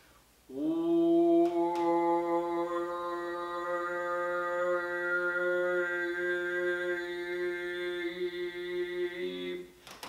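A man's voice holding one long, steady sung note for about nine seconds, full of harmonics: a plain voiced drone with the voice's natural overtones all present, not yet filtered into a single overtone.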